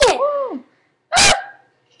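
A girl singing the end of a line, "it", her voice gliding and fading out within half a second; just over a second in comes one short, loud vocal cry.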